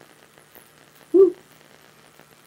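A short hummed "mm" from a woman's voice a little past halfway, otherwise only low room tone.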